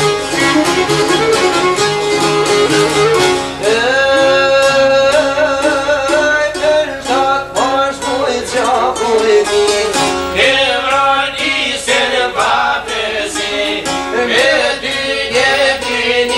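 Albanian folk ensemble playing: a violin carrying a gliding, ornamented melody over steadily strummed long-necked lutes.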